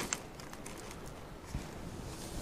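Faint handling sounds of seed sowing: a few light clicks as dried marrowfat peas are shaken from a packet onto compost in a cut-down milk carton, then a soft knock about one and a half seconds in as the carton is set down on the table.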